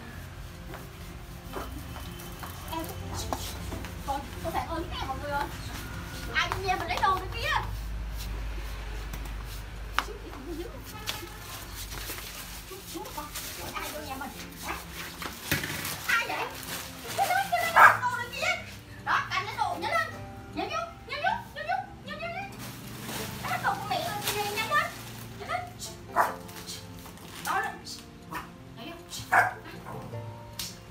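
Toy poodle barking repeatedly in short bursts, more densely in the second half, over background music.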